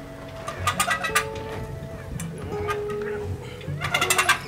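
Hand-cranked boat trailer winch clicking in bursts as it winds the boat up onto the trailer, over background music with long held notes.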